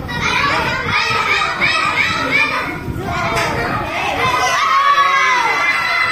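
A group of young children shouting and cheering in high voices, with quick, evenly repeated calls over the first few seconds and a long drawn-out call about five seconds in.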